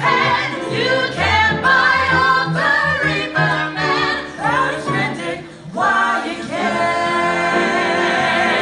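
A mixed vocal ensemble of men and women singing together in harmony, with a low line beneath the voices; the phrase breaks off briefly about five and a half seconds in, then the voices hold a long chord.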